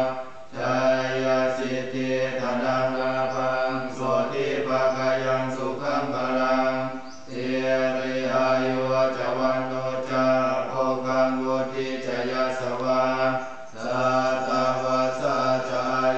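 Buddhist monks chanting Pali blessing verses together in a low, even monotone, with short pauses for breath about three times.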